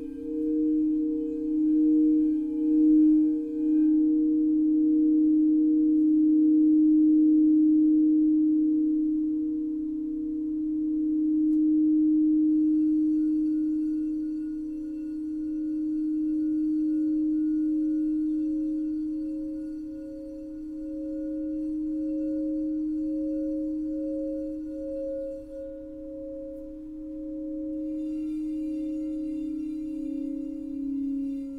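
Alchemy crystal singing bowls tuned to 432 Hz, rung by a mallet circling their rims: a strong sustained low tone with higher tones wavering and pulsing over it. Loudness swells and ebbs, and a new higher bowl tone joins about 13 seconds in.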